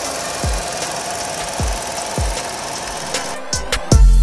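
Kia Soul engine idling with the hood open, a steady mechanical running sound under a quieter stretch of background music with a few kick-drum beats; the full music comes back in just before the end.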